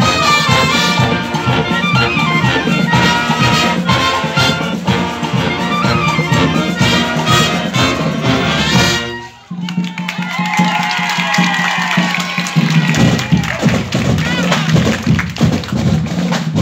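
Marching band playing in full, led by brass (trumpets, trombones, sousaphones) and saxophones. The music drops out for a moment about nine seconds in, then carries on.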